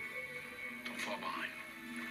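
Television drama score playing through a TV speaker, with steady held tones, and a brief sweeping sound that falls and rises again about a second in.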